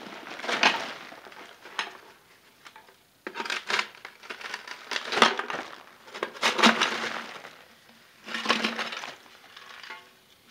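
Lumps of baked bituminous coal being broken out of a paint can and dropped onto a plastic sheet. It comes as short bursts of crunching, cracking and clinking, about half a dozen of them at uneven intervals.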